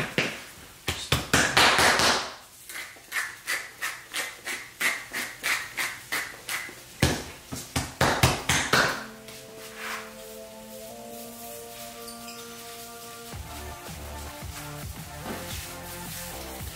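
A hand slapping and patting a raw sirloin steak on a wooden cutting board, repeated taps about twice a second, with two stretches of a pepper grinder cracking pepper over it. Background music comes in about nine seconds in.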